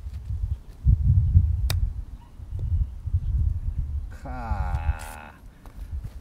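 A single sharp click about a second and a half in: a golf wedge striking the ball on a short chip shot, over a steady low rumble of wind on the microphone. About four seconds in, a drawn-out voice-like call lasts about a second.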